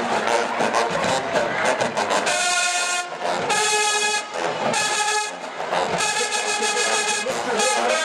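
College marching band in the stands playing brass and drums: loud held brass chords in two blasts a few seconds in, then faster rhythmic playing with drum hits near the end.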